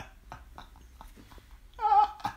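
A man's high-pitched laughter between words: a squeaky note at the start, short quiet catches of breath, then a loud high laugh near the end.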